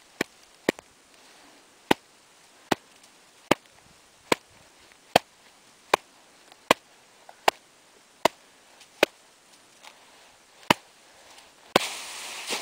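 Hand striking the top of an isolated snow column in a series of sharp taps: two quicker ones at first, then a steady run a little under a second apart. These are the loading taps of an extended column test, in which the weak layer fractures and propagates across the column on the 22nd tap. A louder rush of noise starts just before the end.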